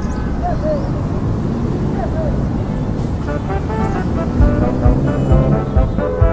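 Indistinct crowd voices over a low rumble, then a cumbia tune with brass starts about three seconds in, with a steady bass-drum beat from about four seconds.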